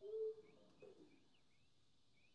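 Sparse free-improvised music for voice, tuba and electronics: a short held note about half a second long at the start, a brief falling sound about a second in, then faint, scattered short high chirps.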